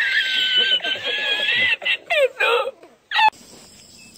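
Meme clip of a man's high-pitched, squealing laugh, with long rising and falling squeals and then a few short gasping bursts, cutting off suddenly a little after three seconds.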